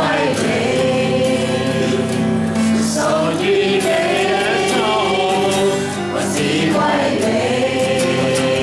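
A Christian worship song: a man singing and strumming an acoustic guitar, with a group of voices singing along.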